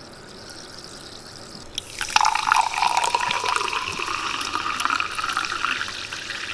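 Perrier sparkling water poured from a glass bottle into a glass, starting about two seconds in. The pour's pitch rises slowly as the glass fills, over the crackle of fizzing bubbles.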